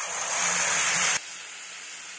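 Liquid poured from a glass into hot oil in a metal kadai: a sudden loud hiss for about a second, then dropping abruptly to a steady, quieter sizzle.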